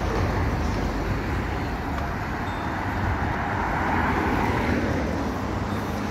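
Road traffic on a city street: a steady rumble of passing vehicles, swelling as one goes by about four seconds in.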